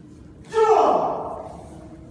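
A karateka's kiai: one loud shout about half a second in, falling in pitch and fading over about a second.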